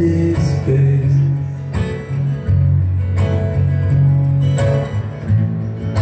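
Acoustic guitar played live, strumming chords with low notes ringing between the strokes.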